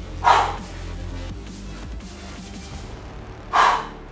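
Two short, forceful exhalations from a man lifting dumbbells, about three seconds apart, one near the start and one near the end, in time with the repetitions of a hammer curl. Background music with a steady low line plays throughout.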